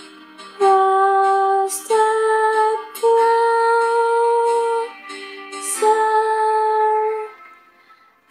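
A young woman singing a slow ballad in four long, held notes with short breaks between them.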